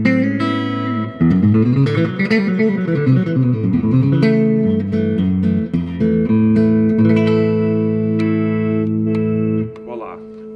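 1950 Fender Broadcaster electric guitar played through an amplifier: a chord and a quick run of single notes, then a chord left to ring for about five seconds before it is muted near the end.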